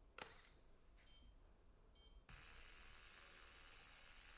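A light click as the prosthetic hand is handled, then two short, high electronic beeps about a second apart from the myoelectric prosthetic hand; faint steady hiss follows.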